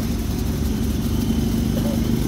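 A vehicle engine running with a steady low drone, heard from inside the cab.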